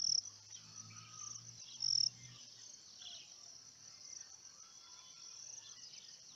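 Insect chorus: a steady high trill, with two louder short chirps, one at the very start and the loudest about two seconds in. A faint low hum runs under it for the first two seconds.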